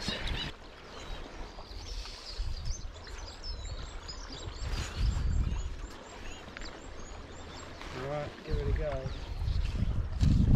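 A small bird singing a run of short, high chirps, several a second, for a few seconds, over the steady rush of a shallow stream. There are low rumbles on the microphone, and a voice speaks briefly near the end.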